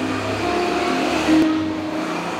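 Guitar playing a slow instrumental intro, held notes ringing out and changing about once a second.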